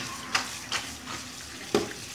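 Kitchen tap running into a metal bowl of cut okra being swirled and rinsed, with the water sloshing and a few sharp clinks of the bowl.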